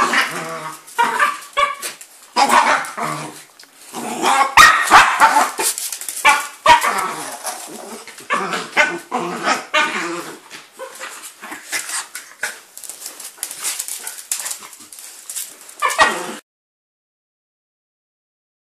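A miniature Jack Russell and a Jack Russell–Chihuahua cross yipping and whining in play as they tug at a thick rope toy, with a few knocks about five seconds in. The sound cuts off suddenly near the end.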